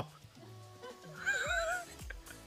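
A horse whinnying briefly with a wavering pitch, starting a little past a second in, over faint background music with steady held notes.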